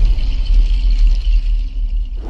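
Deep, steady bass rumble from a cinematic logo-intro sound effect, with a faint high shimmer above it.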